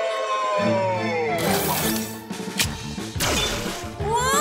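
Cartoon sound effects over music: a whistling tone falls in pitch for about a second and a half, then a crash with a few further bangs.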